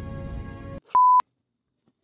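Soft sustained orchestral TV score that cuts off abruptly less than a second in, followed by a single short, steady electronic beep lasting about a quarter of a second.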